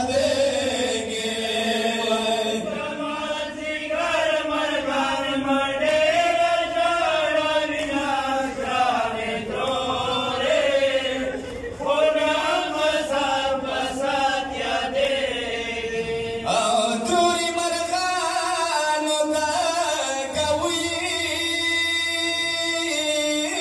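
Men chanting a Pashto noha, a Shia mourning lament, in a continuous melodic recitation through a microphone. The line changes about three-quarters of the way through.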